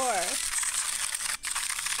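Hexbug Spider toy robot running, its small motor and plastic legs making a dense, dry rattle against a hard plastic case, with a short break about one and a half seconds in.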